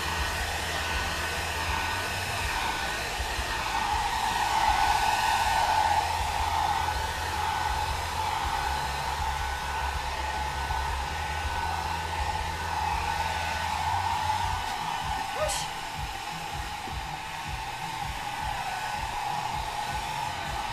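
Handheld hair dryer running steadily, blowing on a dog's coat: a continuous rush of air with a steady whine through it.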